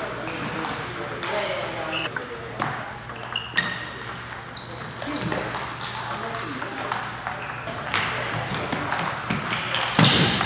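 Table tennis balls clicking off paddles and tables in a doubles rally: quick, irregular clicks, some with a short high ring, with more clicks from play at neighbouring tables.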